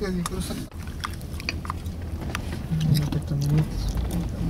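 Low steady rumble of a dust storm heard from inside a vehicle, with irregular sharp ticks of blown sand and grit striking it. A muffled voice is heard briefly at the start and again around three seconds in.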